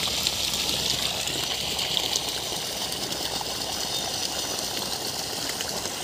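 Water gushing steadily from a 2-inch pipe outlet and splashing onto wet soil: the outflow of a 900 W BLDC solar borewell pump running.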